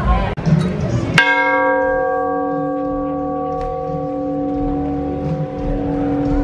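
A large hanging bell struck once about a second in, then ringing on with several tones together that fade slowly, the higher ones dying away first.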